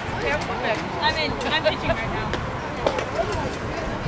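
Several voices of players and spectators talking and calling out over one another, many of them high-pitched, with a few light clicks.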